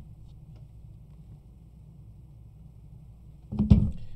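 Quiet room hum with a few faint plastic clicks from graded card slabs being handled, then a loud dull thump about three and a half seconds in as a slab is bumped or set down close to the microphone.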